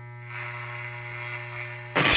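Wahl electric hair clippers buzzing steadily, with a rasp joining the buzz about a third of a second in as the blades cut through hair on the side of the head.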